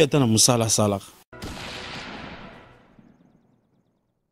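A man talking briefly, then a sudden hit of noise that dies away over about two seconds, its hiss fading first: an edit-transition sound effect for a channel logo bumper.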